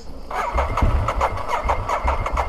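Ducati Hypermotard 939's Testastretta L-twin engine starting about a third of a second in, then idling with a steady pulsing beat.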